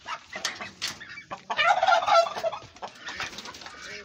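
A duck squawking harshly for about a second as it is grabbed and lifted off the nest, with rustling and knocks of handling before and after.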